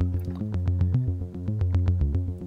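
Behringer Neutron analog synthesizer playing a quick, repeating bass-note sequence. The filter cutoff holds steady with no sweep: the LFO has no effect on the filter because a cable now sits in the frequency mod input, fed from an attenuator turned all the way down.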